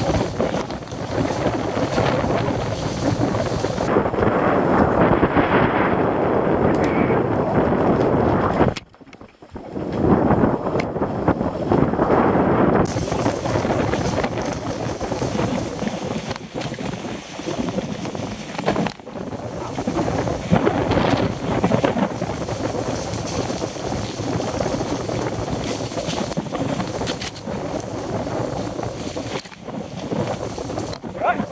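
Wind buffeting a helmet-camera microphone on a mountain bike descending a dirt trail, with scattered knocks and rattles from the bike over rough ground. About nine seconds in the noise drops out for about a second.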